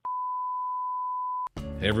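A single steady test-tone beep, the tone that goes with TV colour bars and a 'please stand by' card, held for about a second and a half and then cut off sharply with a click. A man's voice and music start right after.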